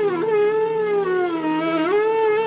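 Flute music: one long note that slowly bends down in pitch and rises again near the end, over a steady low drone.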